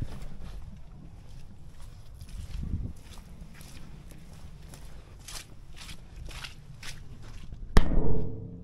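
Footsteps and camera handling over dry brush and dirt, a few scattered steps over a steady low rumble. Near the end comes one sharp, loud knock.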